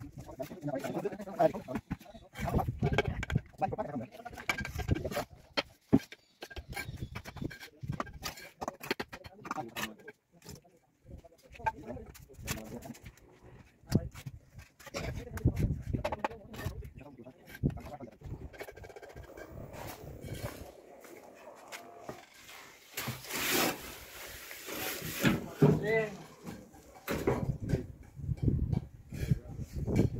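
Bricklaying work: scattered sharp knocks and taps of trowels and hollow ceramic bricks being set in mortar, with indistinct voices. About two-thirds of the way through there is a loud rushing noise lasting a couple of seconds.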